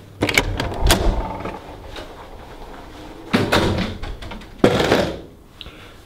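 Hotel room door being pushed open, with a heavy thunk within the first second, followed by two more short noisy sounds a few seconds later.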